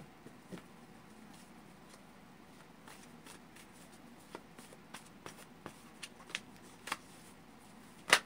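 A deck of cards being shuffled by hand: soft, irregular clicks of the cards slipping against each other, starting about three seconds in and coming several a second.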